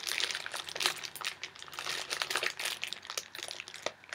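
Clear plastic bag holding a folded piece of linen fabric crinkling as it is handled, a steady run of irregular crackles.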